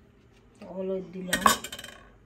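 A metal spoon or ladle clinks against an aluminium saucepan about one and a half seconds in, followed by a few lighter clicks. Just before it comes a short voice sound, like a brief hum.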